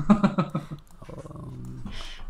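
Men laughing, louder in the first second, then quieter chuckling.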